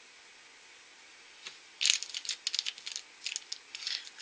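Small plastic toy figure being handled between fingers and long nails: a quick, irregular run of light clicks and crinkles that starts a little under two seconds in, after a quiet start.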